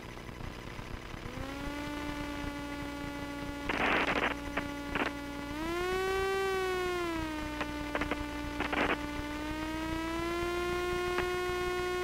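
A steady humming tone in the Jabiru UL-450's cockpit audio during the landing rollout. It starts about a second in, rises in pitch around the middle, settles back and then creeps slowly up. Two short bursts of hiss and a few clicks break in.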